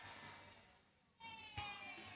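Near silence in a pause of a speech over a stage PA. A faint echo fades out and the sound drops to dead silence for about half a second. Then a faint held tone, falling slightly in pitch, comes in with a soft click.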